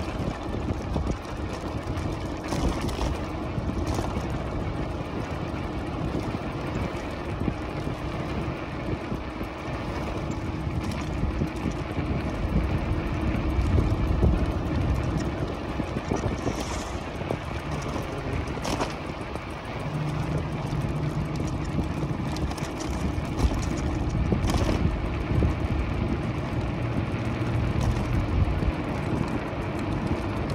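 E-bike riding along a paved street: steady road and wind rush with a faint steady hum, broken by a few brief clicks.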